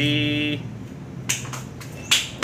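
A man's voice holding a drawn-out hesitation sound for about half a second, then a few short, sharp clicks.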